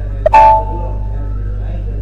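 A short computer alert chime about a third of a second in, a single ringing tone of several notes that fades within about half a second, over a steady low hum. It is the system sound that goes with an SAP GUI status-bar warning ('Specify another selection criteria').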